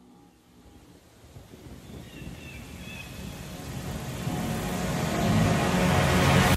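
Car engine noise swelling steadily louder over several seconds.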